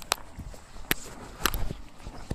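Footsteps on packed snow: a few sharp, irregular crunches over low background rumble.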